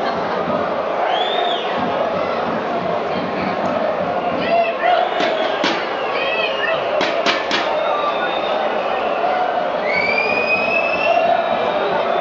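Football stadium crowd: a steady din of many voices from the stands, with several high whistles rising and falling, and a handful of sharp knocks in the middle.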